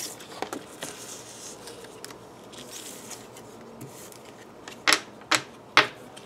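Paper and cardboard being handled: a stiff printed sheet rustling faintly, then three sharp taps near the end as the sheet and cards are set down in a cardboard box.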